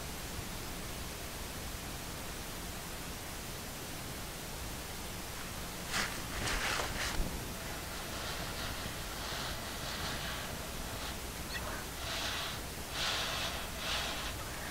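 A steady low hiss of background noise. From about six seconds in comes a run of short, soft, airy noises, a dozen or so, each under a second long.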